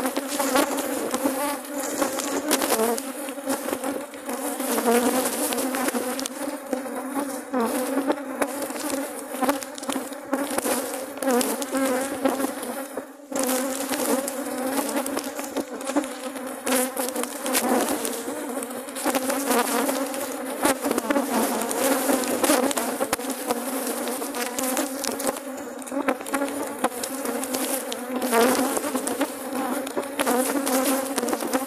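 Dense, steady buzzing of a mass of honey bees flying close around the microphone while their hive is open and being smoked, many wing tones wavering over one another, with scattered small clicks throughout.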